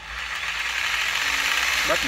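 Shinko SJS-350 jigsaw (100 V, 350 W) running free with no load, its blade reciprocating in the air without cutting. The motor comes up to speed over about the first second as the variable-speed trigger is squeezed, then runs steadily.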